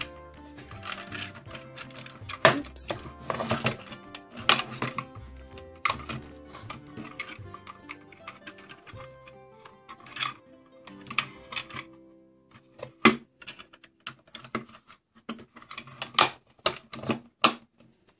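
Hard plastic toy parts clicking and clacking irregularly as a plastic R2-D2 playset is folded closed and its sections slid down and snapped shut, with soft background music underneath.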